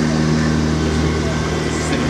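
Steady low mechanical hum with a few faint held higher tones over it.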